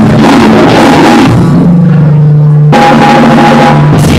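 Loud live band music with drums. About a second and a half in, the band drops out to one held low note for about a second, then the full band comes back in.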